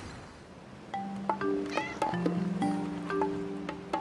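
Soft background music: after a quiet first second, held low notes come in with a few separate struck notes over them.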